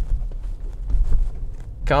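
Car cabin noise while driving over speed bumps: a steady low road-and-engine rumble with a few light knocks and rattles, loudest about a second in.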